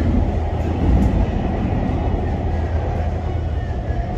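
Metro train running along an elevated track, heard from inside the carriage: a steady low rumble.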